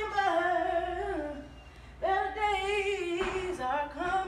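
A young woman singing a cappella, with no accompaniment, in long held, wavering notes. There are two phrases, with a short dip about halfway through.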